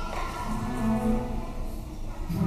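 Orchestra playing a soft passage, cellos bowing a low held note that steps up slightly in pitch about a second in.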